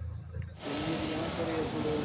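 A low hum for about half a second, then an abrupt change to a steady hiss with faint, indistinct voices talking in the background.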